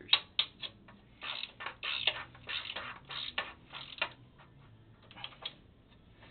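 Ratcheting wrench clicking in short bursts as a bolt on a bowling pinsetter's pin deflector board is turned. A sharp click comes first, then about five quick runs of ratchet clicks, with two faint ones near the end.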